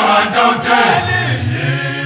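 Male voice choir singing unaccompanied in the South African isicathamiya style, with several voices in harmony. From about a second in, a low bass note is held under the upper voices.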